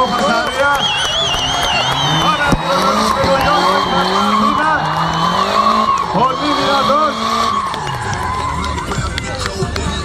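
Drift car's engine revving up and down as it slides, with long, wavering tyre squeals. The squealing stops about three quarters of the way through, and the engine settles to a lower note.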